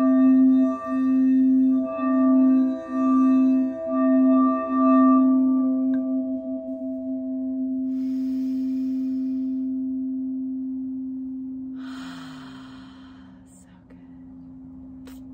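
A big singing bowl sounding one low, steady tone with a few higher overtones, swelling and dipping about once a second for the first few seconds. Then it is left to ring on its own and slowly fades away, with a brief soft noise near the end.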